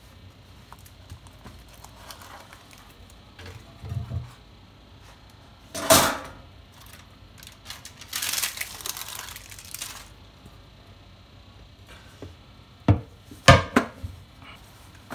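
A metal ring cake pan being handled with a cotton kitchen towel, the cake being turned out onto a plate. There is low fabric rustling, a sharp knock about six seconds in, a rustling scrape lasting about two seconds shortly after, and a few quick clunks of metal on plate near the end.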